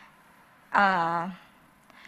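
Speech only: one drawn-out spoken syllable about a second in, hesitating between words, with quiet room tone before and after.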